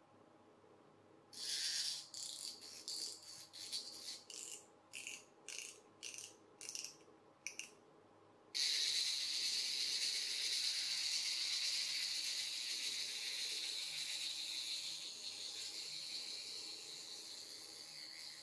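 Small plastic clockwork motor from a toy boat being wound in short ratcheting clicks, two or three a second. Then it is let go: its gear train whirs with a high buzz that starts suddenly and slowly fades as the spring runs down. The motor runs freely, with no particular reason for it not working.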